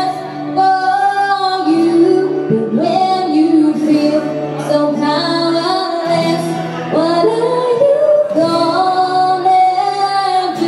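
A woman singing a slow melody with long held notes into a microphone, live with a small acoustic band; a bass guitar carries sustained low notes underneath.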